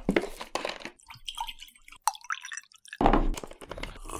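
Liquid poured from a bottle into a mug, with trickles and drips as the pour tails off. Near the end there is a louder sound as the mug is drunk from.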